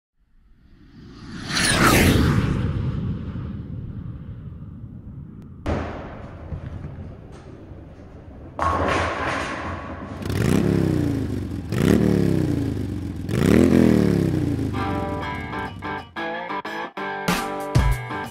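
Edited soundtrack of sound effects and music: a swoosh swelling to a peak about two seconds in, a couple of sharp hits, three sweeps falling in pitch, then music with a beat starting near the end.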